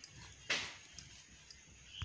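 A wooden rod pounding and mashing pearl millet flour in a steel bowl: a few soft strokes, the loudest about half a second in, followed by faint light knocks.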